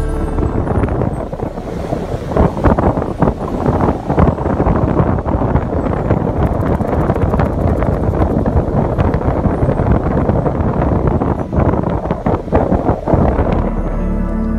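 Wind buffeting the microphone in gusts on a beach, with surf washing in underneath.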